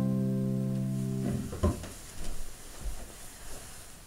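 The final piano chord held and ringing, then cut off about a second and a half in. A sharp knock follows, then a few faint scattered knocks and rustles.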